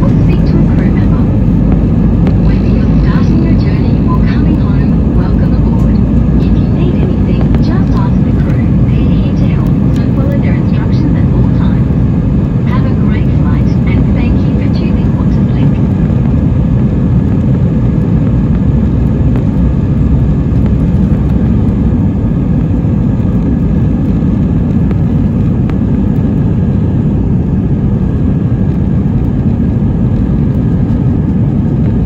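Airbus A320 jet engines and the aircraft rolling on the ground, heard from inside the passenger cabin: a loud, steady low rumble that holds the same level throughout.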